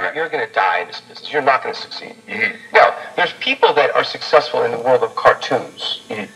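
Becker Mexico valve car radio playing a broadcast voice through its loudspeaker, band-limited and speech-like, over a faint steady hum.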